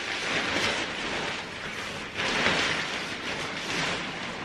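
Tent flysheet fabric rustling as it is lifted and handled. The sound comes in two swells, near the start and again a little past halfway.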